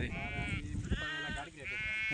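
Sheep in a grazing flock bleating, several quavering bleats one after another.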